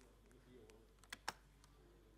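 Near silence, broken by two soft clicks of laptop keyboard keys a little over a second in, close together.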